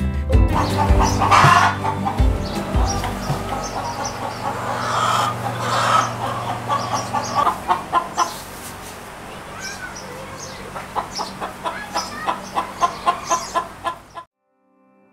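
A flock of domestic chickens clucking, with short calls scattered throughout and a fast run of clucks, about two or three a second, near the end. Soft background music runs under the first half and fades out.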